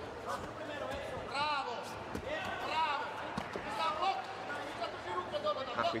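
Taekwondo sparring: a few short, high-pitched shouts from the fighters and sharp thuds of bare feet stamping and kicks landing on the mat and electronic body protectors, over the murmur of the arena crowd.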